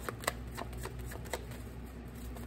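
A deck of tarot cards being shuffled by hand: a string of irregular soft clicks as the cards slide and tap against each other.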